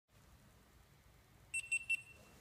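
Near silence, then about a second and a half in, three quick high-pitched electronic beeps from a small device.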